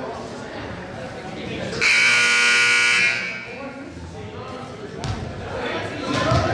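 Gymnasium scoreboard buzzer sounding once for about a second, a steady buzz that stops suddenly and rings on briefly in the hall's echo. Low chatter of voices around it.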